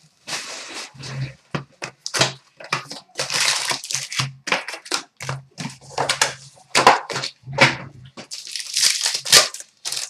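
Hockey trading-card pack wrapper being crinkled and torn open by hand, with the cards inside handled: a quick, irregular run of crackling rustles.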